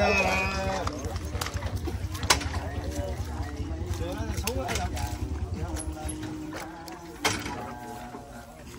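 Several people talking indistinctly at once over a low rumble that fades out near the end, with a couple of sharp knocks.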